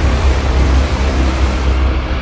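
Cinematic sound design from a music bed: a loud, deep, steady rumble with a noisy hiss-like wash over it, the high hiss thinning toward the end.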